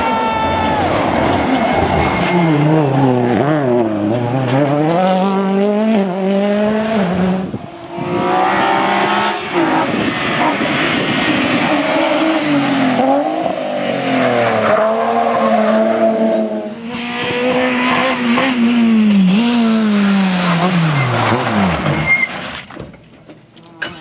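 Rally car engines at full throttle, one pass after another: the engine pitch climbs through each gear and drops sharply at each shift or lift, with brief breaks where separate passes are cut together. The cars include a Ford Fiesta rally car, a BMW E30 and a Citroën C2.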